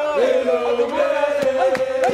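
A group of men chanting together, their voices overlapping, with one pitch held steadily throughout.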